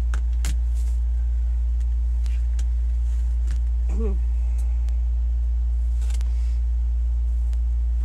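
A loud, steady low hum runs under everything, with a few light clicks and soft rustles of hands handling fabric mesh and a plastic tool.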